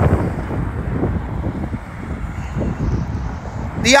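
Wind buffeting a phone's microphone: a loud, uneven rush that swells and dips in gusts. A man's voice starts right at the end.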